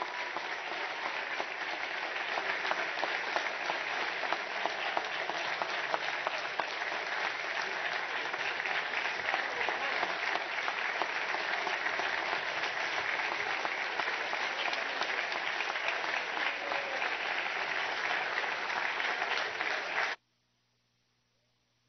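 Sustained applause from a large group of people clapping together, steady and even, cutting off suddenly at the very end.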